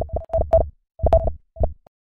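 Electronic intro sting: a stuttering run of short synthesized tones on one steady pitch, each with a low thump beneath.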